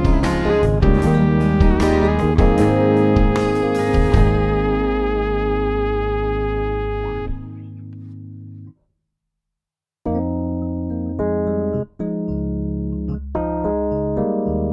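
Piano riff played two-handed on a keyboard. It opens with a run of full struck chords, ends on a held chord that rings out and then cuts off abruptly past the middle, and after about a second of silence slower sustained chords (A-flat major add2, then D-flat sus2) begin.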